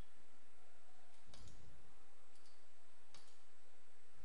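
Computer mouse button clicks, a few sharp ones about a second apart, over a low steady hum. The clicks come from selecting text and right-clicking to copy and paste it.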